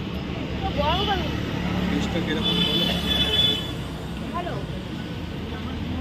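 Busy street ambience: a steady low traffic rumble with background voices of passers-by, and a brief steady high tone about halfway through.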